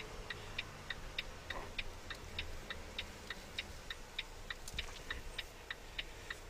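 Turn-signal indicator clicking in a Volvo 730 semi truck's cab, a quiet, even tick about three times a second, over a low engine hum.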